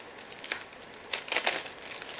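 Thin plastic shrink-wrap being peeled off a pack of cards and crumpled in the hands: a run of irregular crinkles and crackles, loudest a little over a second in.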